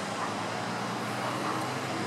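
Steady outdoor background noise with a faint low hum.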